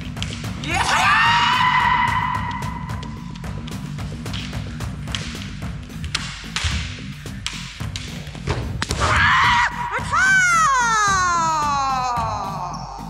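Kendo kiai shouts and bamboo shinai strikes. A long shout rises in pitch about half a second in and is held for about two seconds. Sharp knocks of shinai and footwork follow, and near the end a second shout falls in pitch as the kote strike lands, all under background music.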